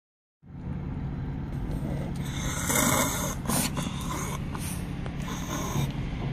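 A small dog breathing noisily, loudest around the middle, over a steady low car-cabin rumble.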